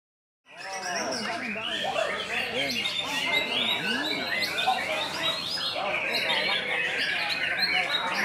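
Many songbirds singing and chirping at once in a dense, overlapping chorus, with people's voices underneath. The sound cuts in about half a second in.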